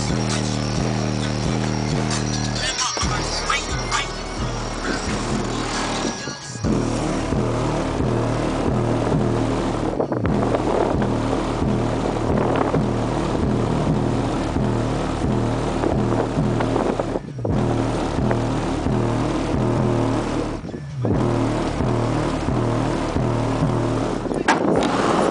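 Bass-heavy rap music played loud through a DC Audio Level 4 XL subwoofer in a car's trunk, heard inside the cabin: deep bass notes in a repeating pattern, broken by a few short gaps.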